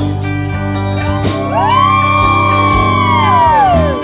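Live country-rock band playing an instrumental break. An electric guitar lead bends notes up about a second in, holds them and lets them slide back down near the end, over a steady bass line.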